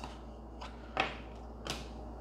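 Tarot cards being picked up off a cloth-covered table: three short soft clicks and taps, the clearest about a second in, over a faint low hum.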